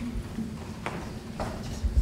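A few footsteps and light knocks of people moving about a room, over a low hum. Near the end comes a heavy low thump, the loudest sound.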